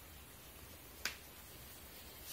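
Low, steady background hiss with a single sharp click about a second in.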